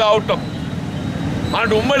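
A man speaking Telugu, with a break of about a second in his speech. During the break a steady low rumble of background noise carries on under the voice.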